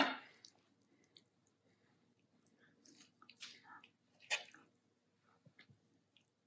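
Faint soft, wet scooping sounds of chickpea curry being ladled from a steel pot onto a plate, with a light clink of the metal ladle a little past four seconds in.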